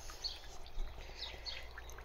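Water from the central heating system trickling out of a copper drain pipe through the outside wall onto the ground as the radiators are depressurised, with a few faint bird chirps over it.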